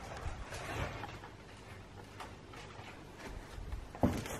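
Faint footsteps going up a narrow wooden staircase, a few soft irregular thuds and shuffles.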